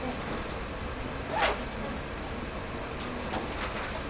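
Lecture-room tone with a short scratchy rustle, like fabric or a zipper, about a second and a half in, and a light click near the end.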